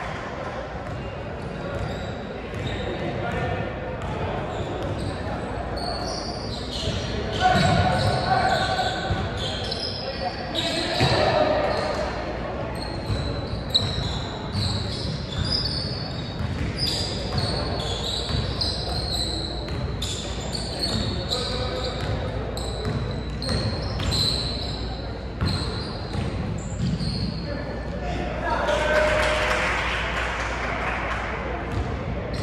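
Basketball being dribbled and bounced on a hardwood court, with many short high-pitched squeaks of basketball shoes on the floor, and players and spectators calling out, all echoing in a large gym.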